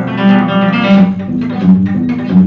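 Solo classical guitar played fingerstyle: a series of plucked notes over sustained bass notes.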